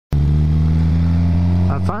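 Suzuki GSX-R sport bike engine running at a steady speed while riding, holding one even pitch over wind and road noise. A man's voice starts near the end.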